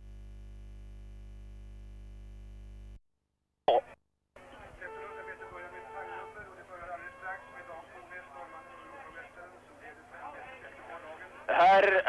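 A steady buzz for about three seconds that cuts off suddenly, a short click, then faint background music with short held notes; a man's voice starts talking near the end.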